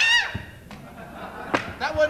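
Stage performers letting out wordless shouts and yelps while stomping and jumping, with thuds of feet on the stage floor. It opens with a falling shout, and a thud follows about a third of a second in.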